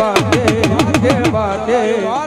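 Dak, the hourglass folk drum, struck in a fast roll of about eight strokes a second, its pitch sliding up and down with each stroke; the roll stops about a second and a half in while singing and accompaniment carry on.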